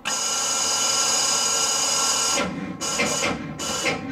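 Electric starter motor on the bus's Detroit Diesel two-stroke 71-series engine whirring in one long try of about two and a half seconds, then three short bursts, without the engine turning over: the one charged battery is too weak to crank it.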